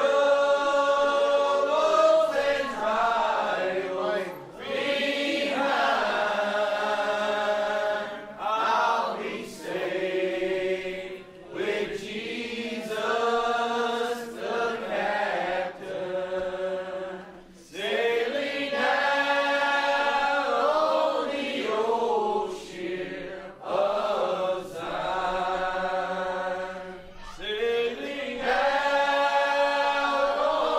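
A church congregation singing together, slow phrases of long held notes with short breaks between them.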